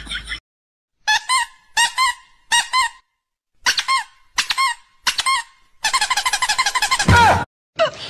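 A dubbed comic sound effect of short, high squeaky chirps: three in a row, a gap of dead silence, three more, then a fast run of them ending in a loud falling squeal.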